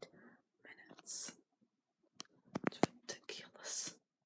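A person whispering in short breathy phrases, with a few sharp clicks about two and a half seconds in.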